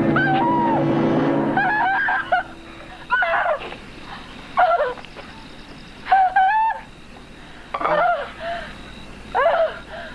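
A man's wordless vocal cries, about seven short bursts that bend in pitch, coming every second or so. Droning scary film music fades out in the first few seconds.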